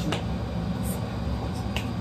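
A few short, sharp clicks over a steady low hum.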